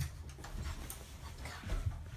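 A sharp click at the start, then close breathing and the rumbling, rustling noise of a phone being handled in the dark.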